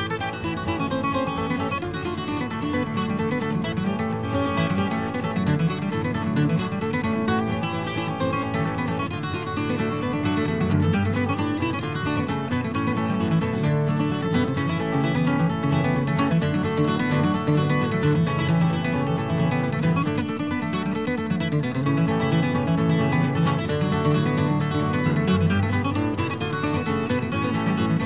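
Flatpicked acoustic guitar playing a ragtime fiddle tune as an instrumental, a running melody of quick single notes over a steady bass line, without pause.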